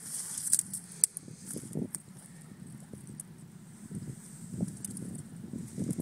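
Rustling and crackling of grass and brush being moved through, with scattered light clicks.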